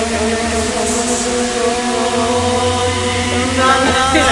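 A man singing long held notes over loud, bass-heavy backing music, several pitches sounding together and changing near the end.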